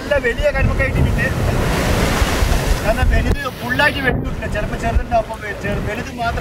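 Atlantic surf breaking and washing across a tidal rock shelf in a steady rush, with wind buffeting the microphone.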